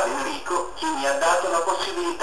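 Synthetic computer voice of a speech-generating communicator speaking Italian in short, steadily paced phrases.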